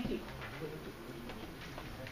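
A brief spoken "thank you", then faint low voices talking quietly in a classroom.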